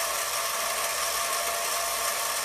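VEX EDR robot's two drive motors spinning its wheels freely off the ground: a steady whir with a gear whine. The right motor is PID-controlled to follow the left wheel.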